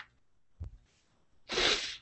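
A short, sharp rush of breath lasting about half a second near the end. A faint click and a soft knock come before it.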